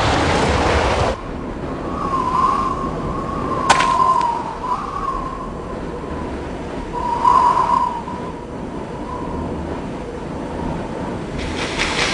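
A Jeep's tyre spinning in loose gravel, a loud rush that cuts off about a second in. A quieter stretch follows, with a thin wavering whistle that swells several times and one sharp click a little before four seconds. Another loud rush comes in near the end.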